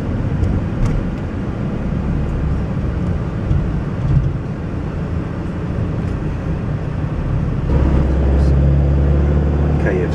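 Steady low rumble of the vehicle's engine and road noise, heard from inside the cabin while driving slowly in town traffic; the rumble grows louder near the end.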